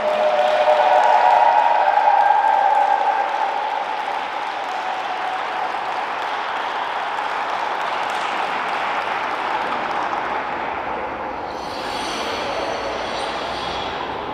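Audience applause in an ice arena, loudest in the first three seconds and then continuing steadily.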